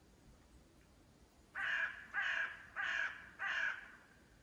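A crow cawing four times in a row, starting about one and a half seconds in, the caws about two thirds of a second apart.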